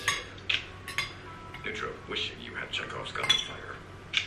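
Fork and knife clinking and scraping against a bowl of noodles while eating: sharp clinks at the start, about half a second and a second in, softer scraping between, and a louder clink a little past three seconds.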